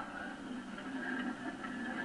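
Faint, steady background hiss from the film soundtrack, with no distinct event.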